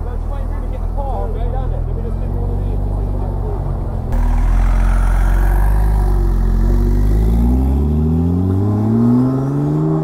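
Porsche 911 Turbo S twin-turbo flat-six running as the car rolls slowly past, growing louder about four seconds in. Over the last two seconds it revs up in a rising pitch as the car accelerates away.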